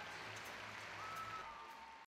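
Distant crowd applause in an arena, an even patter that fades away toward the end.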